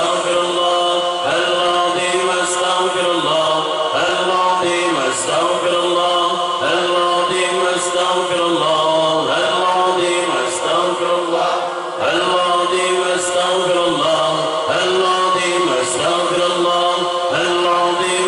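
A congregation of men chanting Islamic dhikr (ratib) together, a short phrase repeated over and over at a steady rhythm.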